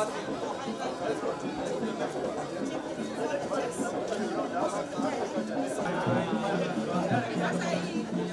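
Indistinct chatter of several people talking at once, with music playing underneath; from about six seconds in, low held musical notes stand out more.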